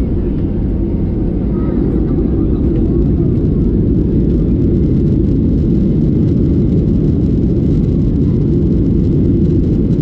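Boeing 737-800's CFM56 jet engines heard from inside the cabin over the wing: a loud, steady low rumble that grows a little louder a few seconds in, as the jet lines up on the runway and starts its takeoff roll.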